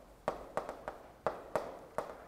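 Chalk striking and stroking a chalkboard as characters are written: a series of short, sharp taps, about five, roughly three a second.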